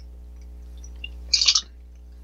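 A short slurp of thin, runny custard sipped off a spoon, about one and a half seconds in, over a steady low hum.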